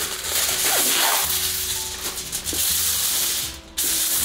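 A sheet of aluminium foil being pulled off the roll and crinkled in the hands: a continuous rustling crackle that breaks off briefly near the end.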